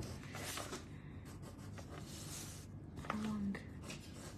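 Pencil lead scratching across a paper tile in repeated short shading strokes.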